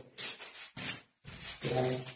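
A man's sharp, hissing exhalations while swinging two training sticks through a pattern, ending in a short voiced grunt. No stick-on-stick clashes are heard.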